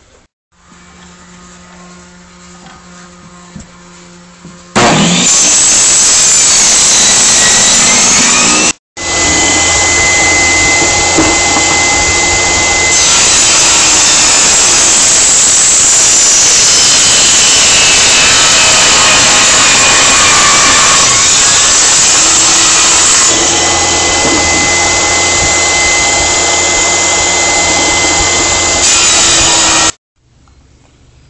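Electric table saw starting suddenly about five seconds in and running loud and steady, with a change in its sound from about 13 to 23 seconds in as a wooden board is fed through the blade. Quieter handling sounds come before it, and the noise breaks off briefly about nine seconds in.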